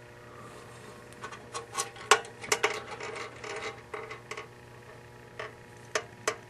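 Metal clinks, clicks and rattles as the porcelain-enamelled gum machine cabinet is handled and its back door opened, a flurry of sharp knocks from about a second in until past the four-second mark.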